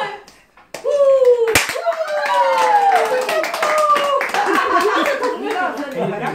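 A small group of people clapping and cheering, with many quick hand claps under drawn-out, falling shouts, starting about a second in after a brief lull.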